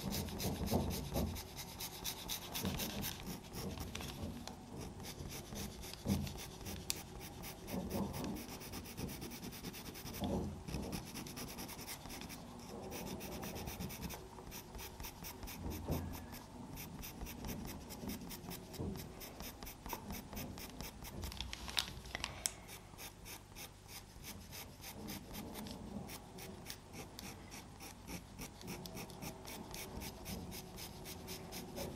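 Faber-Castell Pitt pastel pencil scratching softly on Pastelmat paper in many quick, short strokes as fur is laid in.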